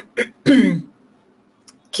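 A person clearing their throat: a brief sound, then a longer one falling in pitch about half a second in.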